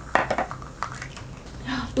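Small hard-plastic toy capsule being snapped open by hand: a quick cluster of sharp plastic clicks and clatter, then one more click a moment later.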